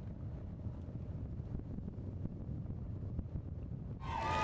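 Wind buffeting an outdoor microphone: a steady low rumble.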